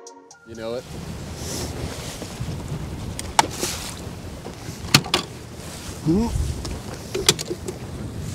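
Wind buffeting the microphone over choppy water around a fishing boat, broken by a few sharp clicks and knocks of gear being handled on the deck and a short rising squeak about three-quarters of the way through.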